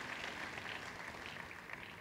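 Audience applause, faint and thinning out as it fades away.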